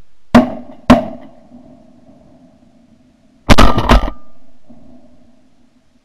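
Shotgun shots: two sharp blasts about half a second apart near the start, then a louder, longer blast about three and a half seconds in, each followed by an echo that slowly fades.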